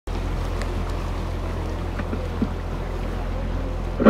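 Canal tour boat under way, its motor running with a steady low hum and some water noise.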